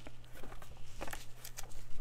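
Hands handling paper craft supplies on a wooden tabletop: soft rustling and a few small taps, over a faint steady low hum.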